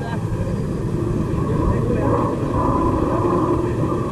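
Outdoor location sound: a steady low rumble with faint voices talking in the background.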